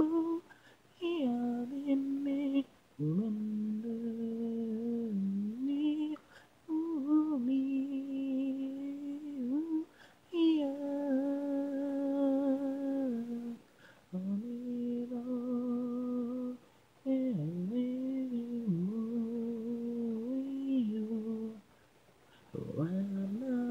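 A solo unaccompanied voice singing a slow melody in long held notes, phrase after phrase, with short pauses for breath between them.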